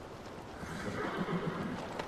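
A horse whinnying, one wavering call of about a second, over a steady low outdoor background.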